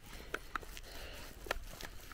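Faint footsteps on a gravel and grass track: a few irregular small clicks and scuffs over a low background rumble.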